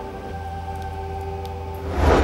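Background film score: a held synthesizer chord over a low drone, with a loud rising swell right at the end.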